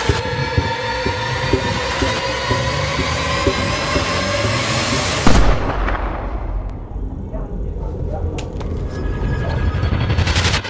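Horror-trailer score and sound design: a dense, swelling wall of held tones over a low pulse about two beats a second, building to a loud hit about five seconds in. It drops to a low rumble with scattered clicks, then swells sharply again near the end.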